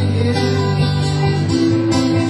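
Several acoustic guitars strumming chords together in a steady instrumental passage of a live song, with no singing.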